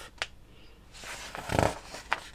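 Paper pages of a kit instruction booklet being turned: a short click soon after the start, then a brief papery rustle in the second half.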